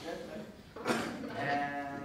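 A man's voice speaking, holding one long drawn-out vowel from about halfway through.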